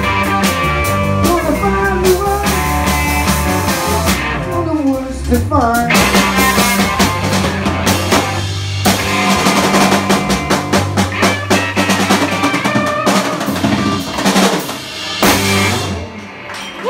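Live blues band playing an instrumental jam: electric guitars over bass guitar and a Sonor drum kit, with a descending guitar run about five seconds in.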